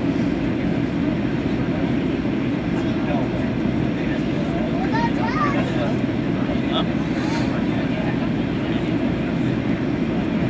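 Steady cabin noise of a Boeing 737 airliner on approach: engine and airflow rumble heard from inside the cabin, with faint passenger voices in the background.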